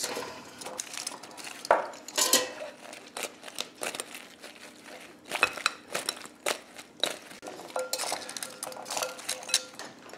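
Glass mixing bowl being shaken and rocked on a stone counter to toss hot chicken wings in an oily green sauce: irregular clinks and knocks of glass and of the wings hitting the bowl's sides.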